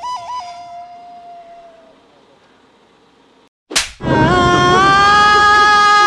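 Edited comedy sound effects. A short tone bends up and down and fades out over about two seconds. A single sharp hit comes at about three and a half seconds in, then a loud, long held high note with no words.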